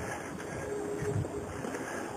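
Steady low outdoor background rumble with no distinct event, the kind of hum given by a street and wind on a handheld camera's microphone.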